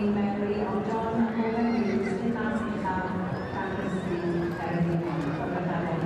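Welsh Cob stallion neighing, with voices over it.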